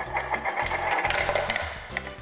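Large ball rolling round and round inside the plastic funnel of a Thrill Bomb marble game, a steady rolling whir that eases off near the end as the ball drops into the centre chute.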